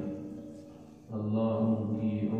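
A man's voice chanting a religious recitation in long, held melodic notes. The voice tails off over the first second, pauses briefly and takes up again just past halfway.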